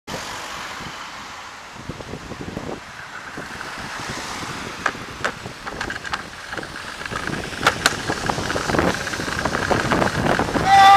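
Road traffic and wind noise heard from a bicycle-mounted camera as a car passes close, with a few sharp clicks about five and eight seconds in.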